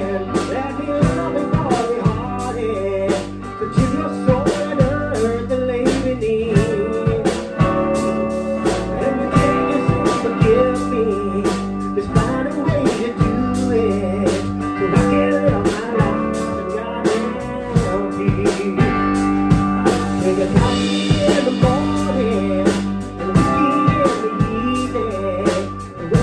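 A live band playing together: drum kit, electric bass guitar and guitar, with a melody line that bends up and down in pitch over a steady beat.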